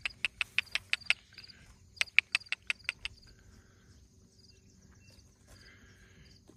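Horses grazing right beside the microphone: two quick runs of sharp snaps, about five a second, as they bite and tear off grass, the first over the opening second and the second about two seconds in. Insects chirp faintly and steadily behind.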